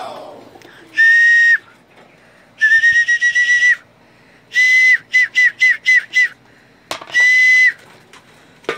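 Pigeon fancier's whistle calling racing pigeons in to the loft: loud, steady, single-pitch blasts. There is a short blast, then a longer one, then a run of quick short toots, and a final blast near the end.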